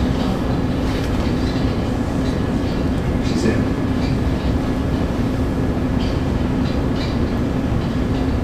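A steady low rumble with a constant hum, and faint voices murmuring underneath.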